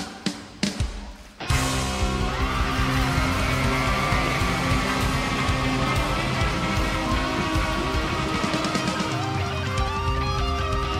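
Live rock band with electric guitars, bass guitar and drums: a near-stop with a few short stabs, then the full band comes back in about a second and a half in and plays a guitar-led passage.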